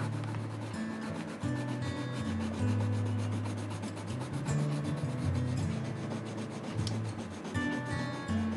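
Coloured pencil shading on paper: a rapid scratchy rubbing of quick back-and-forth strokes as blue is laid into the drawing. Soft background music with held low notes plays underneath.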